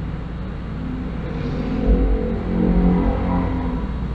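An engine running, a low rumble that grows louder about a second and a half in and eases near the end, over a steady low hum.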